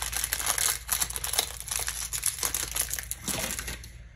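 Foil wrapper of a Pokémon Evolving Skies booster pack crinkling in the hands as the pack is worked open and the cards are slid out: a rapid run of small crackles that thins out near the end.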